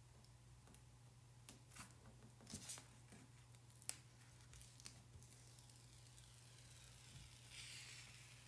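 Near silence: a low steady hum, with a few faint ticks and crinkles of transfer tape and vinyl backing being handled and peeled.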